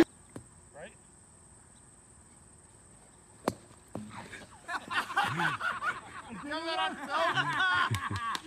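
A single sharp crack about three and a half seconds in, then several people laughing and calling out.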